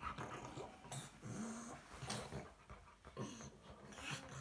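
A Labrador retriever and a pug play-fighting, the Lab mouthing the pug's face: short, irregular dog growls and breathing sounds, with a brief low steady note about a second and a half in.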